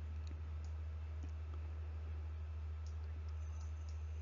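Steady low electrical hum with a few faint, scattered clicks.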